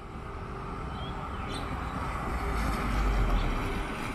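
Perodua Axia with a stainless steel extractor exhaust header driving up to and past close by. Its engine and tyre noise grows steadily louder, peaking about three seconds in.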